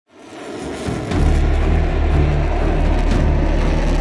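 Jet fighter engine roar, fading in over about the first second and then holding loud and steady, with a deep low drone beneath.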